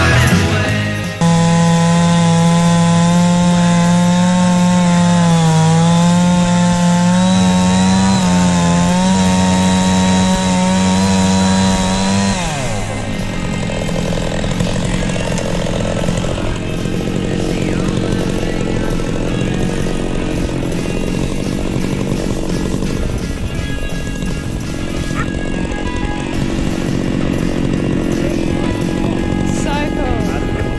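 Stihl MS660 two-stroke chainsaw running at full throttle in an Alaskan chainsaw mill, cutting along a red stringybark log, its pitch sagging and recovering slightly under load. About twelve seconds in the throttle is let off and the engine note falls away, leaving a quieter sound under music.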